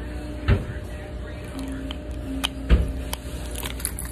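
Two dull knocks about two seconds apart, with a few faint clicks, over a steady low hum.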